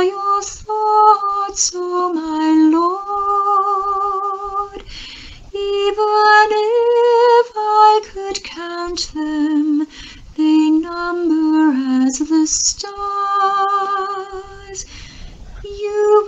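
A woman singing a slow song solo, in long held notes with vibrato, phrase after phrase.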